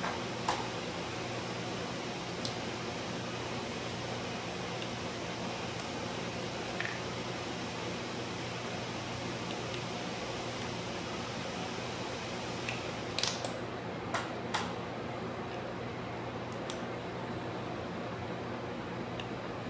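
Steady low hum of laboratory room noise, with a few sharp, light clicks of plastic labware being handled during pipetting. Several of the clicks come close together about thirteen to fifteen seconds in.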